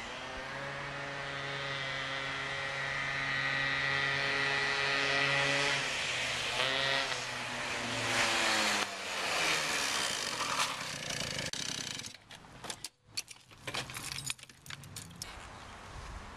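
A car and a motor scooter driving past. A steady engine hum grows louder, drops in pitch as they pass about seven seconds in, and fades out by about twelve seconds. A few light clicks and rattles follow near the end.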